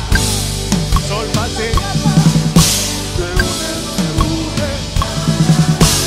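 Live drum kit played with a band: kick, snare and tom strikes with cymbal crashes, the biggest about two and a half seconds in and again near the end, over bass and other instruments.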